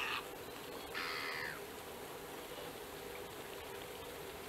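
A bird's harsh call, twice: once at the very start and again about a second in, the second call falling slightly in pitch.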